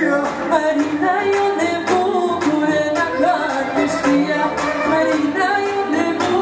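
Live wedding dance music: a woman singing into a microphone over an amplified band with a steady beat.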